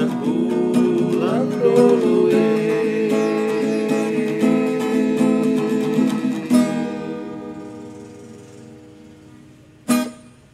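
Acoustic guitar strumming the closing bars of a song, ending on a final chord about six and a half seconds in that rings out and slowly fades. A sharp knock comes at the very end.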